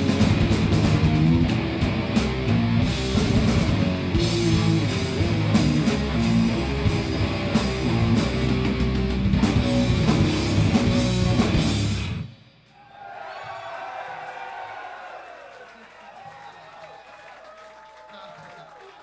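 Heavy metal band playing live, with distorted electric guitar, bass and drum kit, until the song stops abruptly about twelve seconds in. Then the crowd cheers and shouts, fading toward the end.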